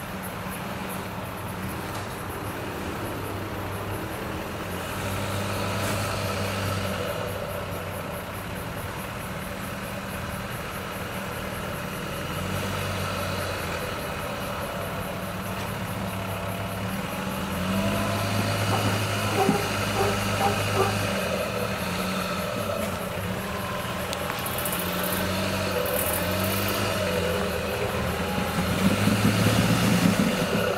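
Land Rover Discovery 1's 300Tdi four-cylinder turbo-diesel running at low revs while rock crawling, its note swelling and easing with the throttle in stretches of a few seconds. A few short knocks come about two-thirds through, and the engine is loudest near the end.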